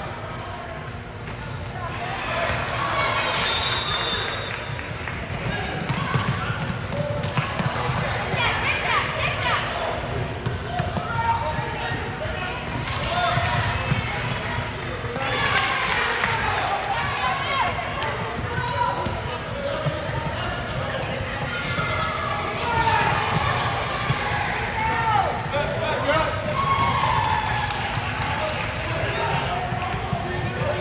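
A basketball bouncing on a hardwood gym floor during play, over continuous chatter and calls from players and spectators echoing in a large gym.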